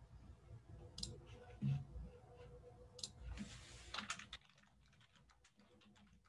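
Faint scattered clicks and taps of a computer keyboard and mouse, a few at a time, with the loudest cluster about four seconds in just after a short rush of noise.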